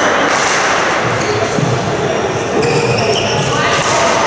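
Busy badminton hall ambience between points: an echoing murmur of voices, with a few sharp hits and footfalls from the courts.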